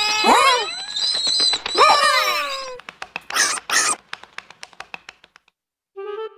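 Cartoon character's squeaky, wordless vocal sounds with sliding pitch over a steady high tone, followed by two short noisy bursts and a quick run of fading ticks, a comic sound effect for the character dropping to the ground. Dead silence just before the end.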